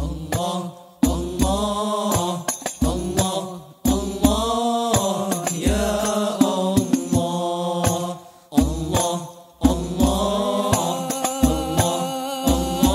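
Sholawat sung by a group of male voices with Al Banjari frame drums (terbang) beating a rhythm under the singing. The drums come in at the very start after a solo vocal line, and the singing pauses briefly between phrases.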